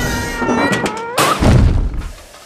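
Animated film soundtrack: a held, high-pitched pitched sound over noise, then a deep, loud boom about a second and a half in.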